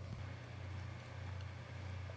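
A steady low hum with a faint background hiss, and no distinct events.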